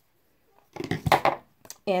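Handling clatter of hand pruning shears and a wooden jumbo craft stick being trimmed: a loud burst of knocks and rustle about a second in, then a couple of light clicks.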